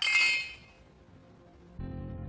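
A brief, bright clink at the start that rings and fades over about half a second. Low, steady background music comes in near the end.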